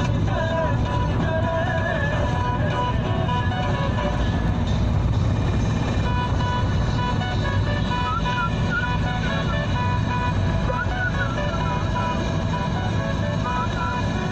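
Steady engine and road rumble inside a moving vehicle, with music with a wavering melody playing over it.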